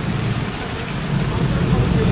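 Heavy monsoon rain pouring down on a flooded street, a steady wash of noise over a constant low rumble.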